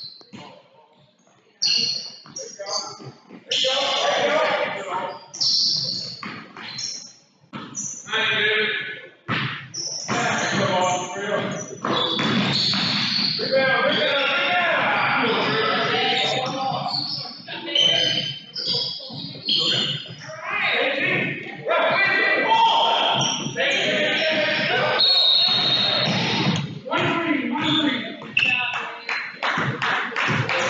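A basketball bouncing on a hardwood gym floor during play, with voices of players and spectators echoing in the hall.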